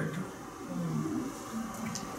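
A pause in a lecture: faint room tone with a low, faint voice murmuring twice.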